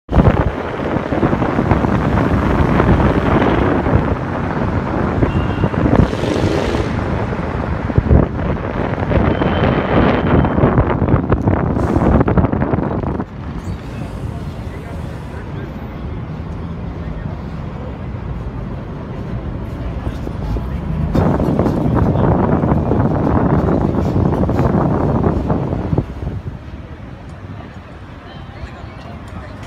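Wind buffeting the microphone outdoors on a city street, in two long loud stretches: one from the start to about halfway, and another near the end. Traffic and street noise sit underneath.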